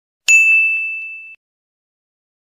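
A single bright bell-like ding sound effect, struck once and ringing for about a second before it cuts off suddenly.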